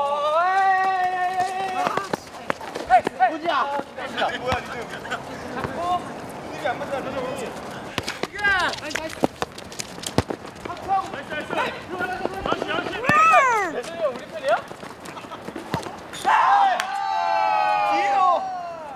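Young men shouting and yelling across a futsal pitch during play, with long drawn-out calls at the start and near the end. Between the calls come a few sharp thuds of a ball being kicked, one about ten seconds in.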